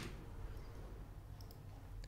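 Faint room tone with two quick, soft computer mouse clicks close together about one and a half seconds in.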